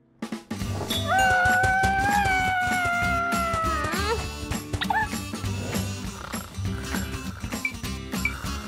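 Cartoon background music with a regular ticking beat. Over it a high, squeaky pitched tone is held for about three seconds and bends upward at its end, followed about a second later by a short rising squeak.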